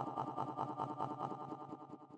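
Experimental electronic music: a tiny frozen fragment of a voice sample looped by the GRM Freeze plugin into a fast stutter of about ten pulses a second, with a steady resonant ring, fading out near the end.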